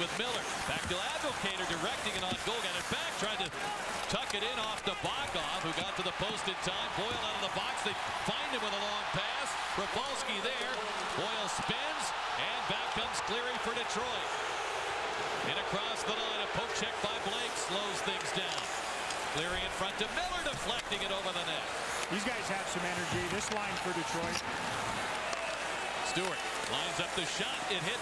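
Ice hockey arena sound: steady crowd noise from the stands, with sharp clacks of sticks on the puck and the puck banging off the boards now and then.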